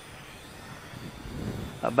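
Faint outdoor background noise in a pause between speech, with a low rumble swelling about a second in.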